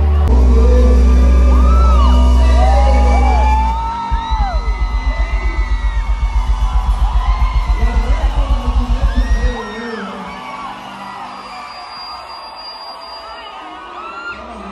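Live band music with a heavy held bass, then a fast low pulsing beat of about seven pulses a second that stops suddenly near ten seconds in, as the song ends. Crowd whooping and whistling over the music, then cheering more quietly after the cut-off.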